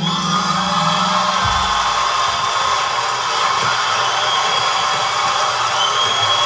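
Studio audience cheering and applauding as the song ends, with the music's last held note cutting off about a second and a half in.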